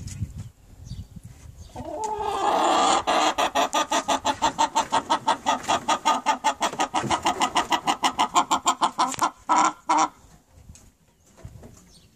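A hen calling: a long run of rapid clucks, about six a second, for some seven seconds, then two short separate calls.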